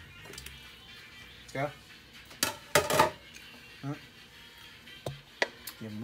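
Kitchenware clattering: a sharp clink, then a short run of knocks and clinks, about two and a half to three seconds in, as utensils knock against a bowl or a stainless pot.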